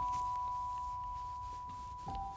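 Soft background music of bell-like chime notes: two notes, one higher than the other, ring on and slowly fade away.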